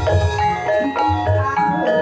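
Javanese gamelan playing Banyumasan music: bronze and wooden bar instruments ringing in a running melody over deep, repeated kendang drum strokes.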